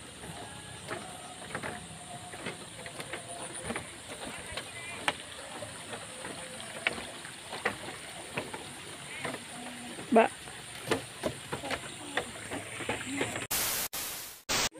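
Footsteps on a wooden walkway: irregular light knocks. Near the end a loud burst of static hiss from a video transition.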